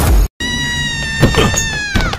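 Music cuts off abruptly, and after a split-second of silence a long, high-pitched wailing cry follows. The cry slowly falls in pitch and drops away at the end.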